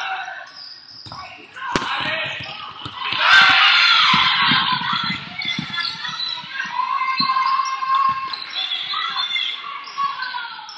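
Basketball bouncing on a hardwood gym floor as it is dribbled, with the short bounces densest a few seconds in. Over them, many spectators' and players' voices overlap, loudest around the middle.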